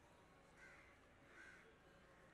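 Faint cawing of a crow: two short calls about a second apart, over quiet outdoor background.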